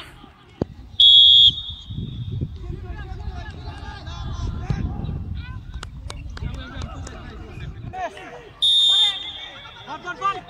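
Referee's whistle blown twice, each a short shrill blast of about half a second, roughly seven seconds apart, signalling penalty kicks in a shootout.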